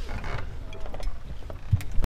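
Handling and movement noise as people get up and pick up belongings on a stage: scattered clicks, rustles and creaks, with a low thump near the end.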